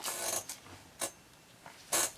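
Plastic comic-book bag crinkling as a bagged comic is handled, with a single short sharp click about a second in.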